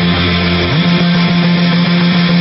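Glam rock band playing an instrumental stretch led by electric guitar, with no singing. About a third of the way in, the low bass note drops away and a held note slides up into place.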